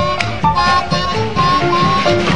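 Blues harmonica solo with the band backing it. The harp plays short held and bent notes, several sliding down in pitch, over a steady drum and rhythm beat.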